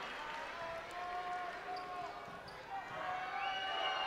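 Crowd noise in a basketball arena during a break between free throws, with a steady murmur of voices and a basketball bounced on the hardwood court.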